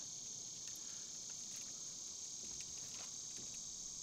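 Steady, high-pitched chorus of insects from the surrounding woods, with a few faint clicks.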